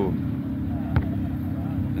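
A car engine idling nearby: a steady low hum, with a single sharp click about a second in.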